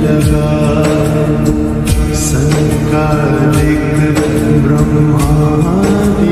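Hindu devotional music, a Hanuman bhajan, with sustained pitched tones over a steady percussion beat.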